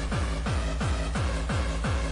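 Early hardcore dance music from a DJ set: a hard kick drum about three times a second, each kick a quick falling pitch, over dense synth sound.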